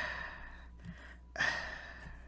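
A person's heavy sigh, a long breath out that fades over the first half second. About a second and a half in comes a second short breath.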